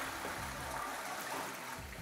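Toilet flushing: water from the cistern rushing and swirling around the bowl, slowly fading toward the end.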